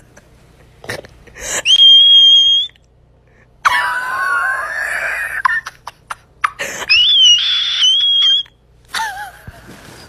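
A person's high-pitched shrieks as a cat swats and grabs at their arm. There are three cries: a steady shrill squeal, then a lower, rougher scream, then a wavering shrill squeal.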